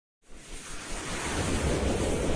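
Whoosh sound effect of an animated logo intro: a rush of noise that starts out of silence just after the beginning and swells steadily louder.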